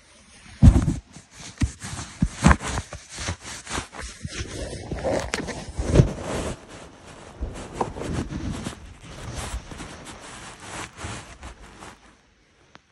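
Handling noise on a phone's microphone: irregular rubbing against fabric and dull knocks as the phone is moved about and covered, with a few heavier bumps.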